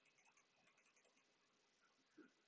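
Near silence, with faint, irregular clicking from a computer mouse being clicked.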